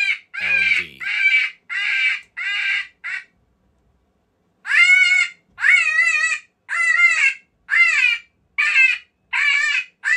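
Lucky Duck Super Revolt electronic predator caller playing its 'TNT' call through its speaker: a string of short, loud animal calls, each bending in pitch, about one a second, with a pause of about a second and a half a little after the third second.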